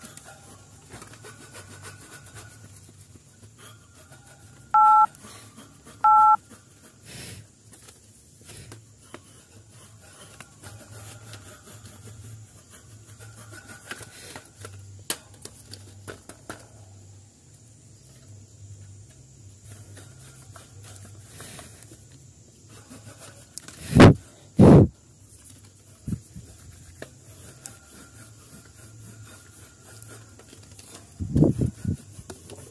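A paintbrush scrubbing dust off the wire grille cover of a standing fan, a faint scratchy rubbing. About five seconds in come two short two-tone beeps a second apart, like phone keypad tones, and later two heavy thumps in quick succession.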